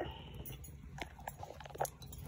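A tabby cat lapping water from a bathroom sink: faint, irregular wet clicks.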